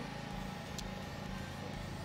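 Steady low mechanical hum, with a faint tick about a second in.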